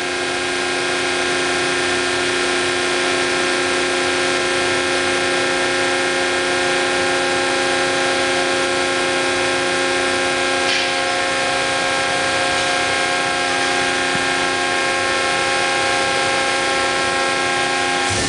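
Hydraulic power unit of a 200-ton four-post down-acting hydraulic press running steadily, a constant hum of several steady tones, as the slide is raised in manual.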